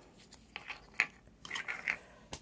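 A few faint clicks and light crackles of small hard objects being handled, with one sharper click about a second in.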